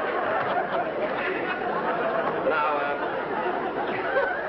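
Studio audience laughing: a long, sustained wave of many voices laughing together.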